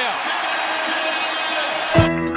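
Basketball arena crowd noise from a game broadcast, a steady din of many voices.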